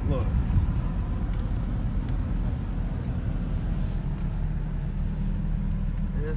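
Vehicle engine running at low speed, heard from inside the cab as a steady low rumble with a faint hum.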